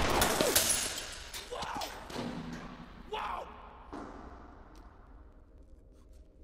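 A single loud gunshot, a pistol bullet punching through a van's side window, its ringing dying away over about two seconds, followed by a few short vocal sounds.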